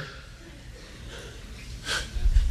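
A pause in a man's speech: quiet room tone, then a short, sharp intake of breath near the end.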